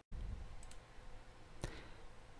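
Faint room hiss in a pause between spoken sentences, with one short click about one and a half seconds in.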